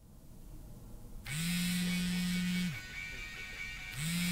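LG touchscreen mobile phone vibrating on a wooden table for an incoming call: a steady buzz with a rattle against the wood, starting about a second in and stopping after about a second and a half.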